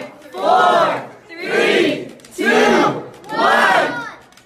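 Excited voices shouting in four loud bursts about a second apart, each rising and falling in pitch.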